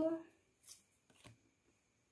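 Two faint, brief rustles of paper flashcards being handled, about two-thirds of a second and a second and a quarter in, as one card is changed for the next.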